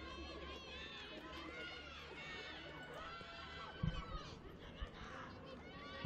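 Faint shouts and calls of players on a football pitch, carrying in a near-empty stadium, with a few dull low thumps about four seconds in.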